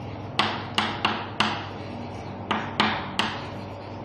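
Chalk knocking against a chalkboard as words are written: seven sharp taps, four in quick succession and then three more about a second later.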